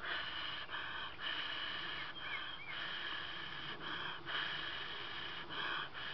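Fine steel wool rasping and fizzing as the terminals of a 9-volt battery are rubbed across it, setting it sparking; an uneven scratchy hiss in stretches broken by short pauses.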